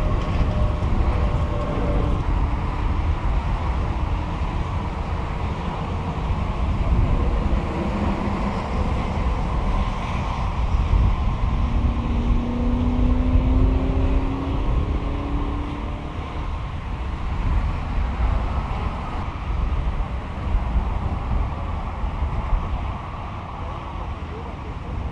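Vehicle engines running and traffic passing on a highway, over a constant low rumble, with engine notes that drift slowly in pitch, clearest about halfway through.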